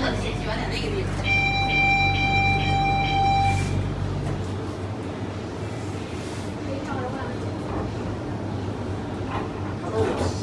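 Monorail car's door-closing warning tone: one steady electronic beep lasting about two seconds, over the car's low steady hum. The hum drops away about four seconds in.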